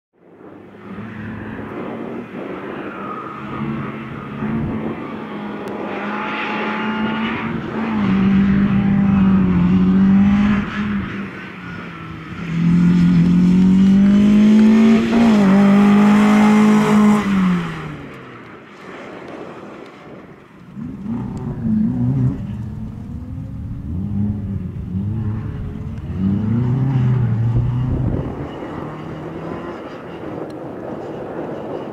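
Skoda Favorit rally car's four-cylinder engine revving hard, its pitch climbing and dropping again and again, loudest in two long pulls through the middle. Later the engine runs quieter in short, broken bursts of throttle.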